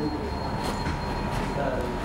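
Steady low background rumble with a thin, steady hum tone and faint voices underneath.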